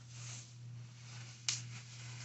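Faint rustling of packing paper and plastic wrap being handled while unpacking, with one sharp click about one and a half seconds in, over a steady low hum.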